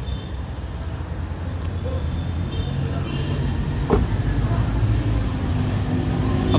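Steady low vehicle rumble, with a light knock about four seconds in.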